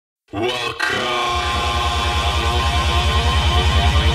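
Electronic dance music starting about a third of a second in: sustained synth chords, with a fast, pulsing bass of about eight pulses a second entering about a second in.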